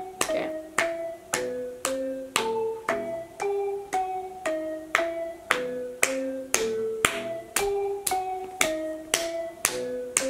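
Instrumental hip-hop beat playing with no rapping over it: a sharp percussive hit about twice a second under a simple melody of short pitched notes that changes on each beat.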